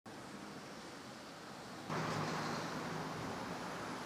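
Street traffic: the steady noise of cars on a city road, getting louder about two seconds in as a car drives by.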